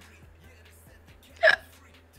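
Faint background music, broken about one and a half seconds in by one short, sharp vocal sound from a woman, a brief hiccup-like sound.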